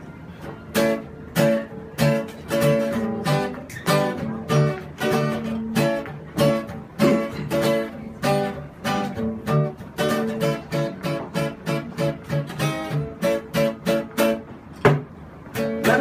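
Acoustic guitar strummed solo in a steady rhythm, with sharp accented strokes about twice a second: the instrumental introduction to a song before the vocals come in.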